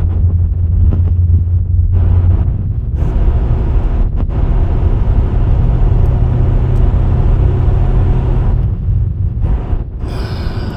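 An 8th-generation Honda Civic's 1.8-litre R18 four-cylinder engine, heard from inside the cabin, pulling up a hill in a lower gear after a downshift. The revs climb toward about 4000 rpm about two seconds in, while the engine hesitates and jerks under load.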